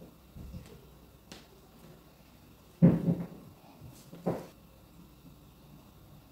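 Handling noises from hands working an applique onto the satin sleeve and dress on the dress form. There is a sharp thump a little under three seconds in and a smaller one about a second and a half later.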